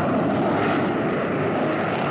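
Jet fighter in flight: a steady engine noise.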